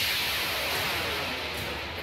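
Rocket motor firing during launch and climb-out: a loud, steady hissing rush that eases slightly near the end. It is heard as launch-video audio played back over a hall's loudspeakers.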